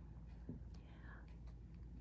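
Quiet room tone with a steady low hum and a few faint, brief soft sounds, such as a breath or a murmur.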